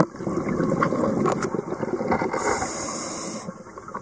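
Underwater sound of a scuba diver breathing: bubbling from the regulator's exhaust, then a hiss of inhaling through the regulator about two and a half seconds in, with scattered clicks and crackles.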